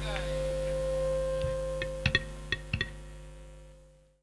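Amplified stage sound system humming steadily with a faint held tone, broken by a handful of short sharp clicks in the middle, then fading out.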